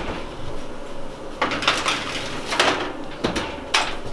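Metal baking tray clattering against the oven rack as the next batch of scones goes into the oven: scraping and several sharp knocks in the second half.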